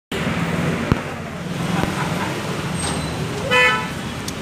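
Steady road-traffic noise with a low engine hum. A vehicle horn gives one short, loud toot near the end, and two sharp clicks come earlier.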